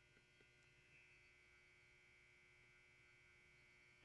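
Near silence: faint steady electrical hum of the recording chain.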